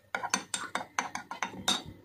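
A teaspoon stirring tea in a china mug: a quick run of light clinks, about four or five a second.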